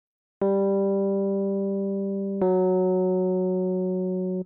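A melodic interval for ear training: two steady electronic instrument notes played one after the other, each held about two seconds and cut off sharply, sounding a major or minor second or third.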